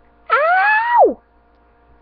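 A person yelling "Ow!": one loud, drawn-out cry that climbs in pitch and then drops off sharply at the end.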